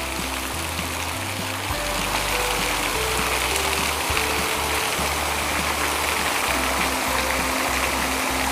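Steady rush of water falling from an outdoor water feature, under background music with held notes and a slowly changing bass line.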